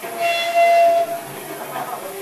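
A single high note held steady for about a second from the band's amplified stage gear, then it drops away into room noise.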